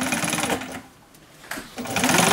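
Industrial sewing machine stitching a quilted car seat cover. It runs for about half a second, stops for about a second, then starts stitching again near the end.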